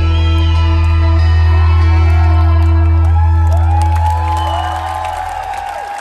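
Live rock band at the end of a song, a low note held steady and fading away over the last second or two, while the audience whistles and whoops.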